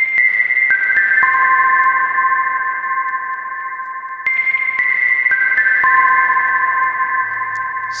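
Ableton Operator synth playing a short phrase of four quick high notes, each ringing on and piling into a sustained wash. The phrase starts again about four seconds in. The synth runs through a long-decay reverb followed by a compressor set to slow attack and fast release, which gives the reverb tails a pumping effect.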